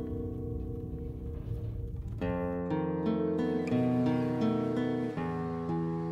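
Solo guitar playing a slow passacaglia: plucked chords and notes left to ring, with a fresh chord struck about two seconds in and another near the end.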